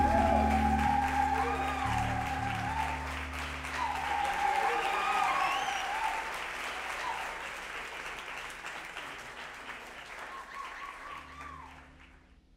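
Audience applause with whistles, after the band's last low notes die away in the first few seconds; the applause fades out gradually toward the end.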